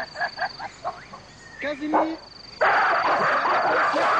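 A few short calls, then about two and a half seconds in a sudden, loud, harsh scream from a silverback gorilla as it charges, carrying on to the end.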